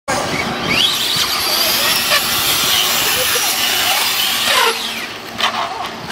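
Radio-controlled trucks accelerating, their motors whining in pitch glides that rise and fall, with a loud rushing noise that drops away about three-quarters of the way through.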